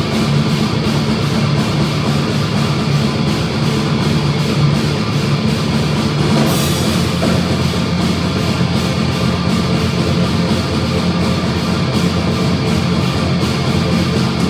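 Live thrash metal band playing loud and steady: distorted electric guitar over a drum kit keeping a fast beat, with a bright cymbal-like burst about halfway through.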